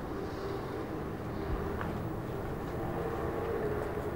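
Steady low rumbling background noise with faint held tones in the middle range, growing a little clearer near the end; no speech.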